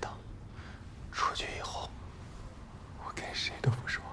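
A man's breathy, whispered vocal sounds, heard twice: once about a second in and again near the end.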